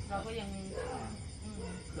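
Speech only: a man talking in Thai, in interview.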